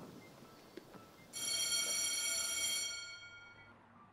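A steady, high-pitched ringing tone with many overtones starts suddenly about a second in, holds for about a second and a half, then fades out.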